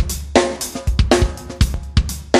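Recorded drum kit loop played back through UAD's Neve 88RS channel strip plugin with its EQ switched out: kick, snare and hi-hat in a steady groove. Some snare hits ring on briefly with a clear tone.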